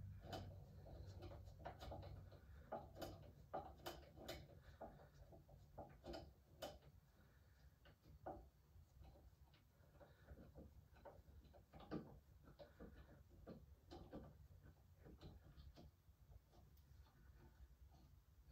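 Near silence broken by scattered faint clicks and taps of hands handling the parts of a resin printer. The clicks come thickest in the first several seconds and thin out after that.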